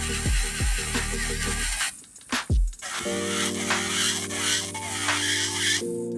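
Background music: an electronic track with a kick-drum beat breaks off about two seconds in. After a couple of drum hits, a new track of held, sustained chords begins about a second later.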